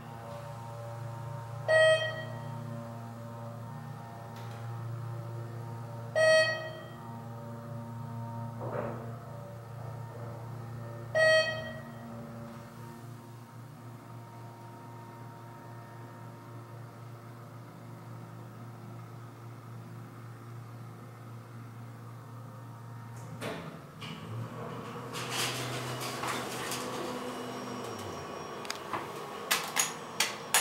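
Dover/ThyssenKrupp hydraulic elevator in travel: a steady low hum from its pump motor while the car moves, with three short chimes about five seconds apart. The hum stops with a clunk at arrival, then the doors slide open, and button clicks follow near the end.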